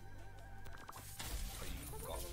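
Reactoonz slot game sound effects: a wavering electronic tone while the grid is empty, then about a second in a sudden crash of noise with a low thud as the new symbols drop onto the grid.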